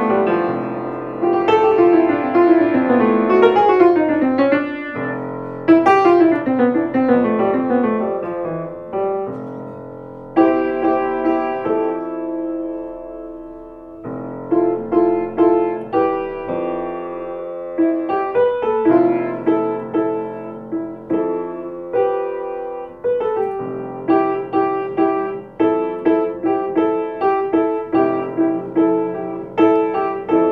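Acoustic grand piano played solo, an improvised meditative piece: falling runs of notes in the first third, then slow held chords, then a steady repeated chord pattern from a little past halfway.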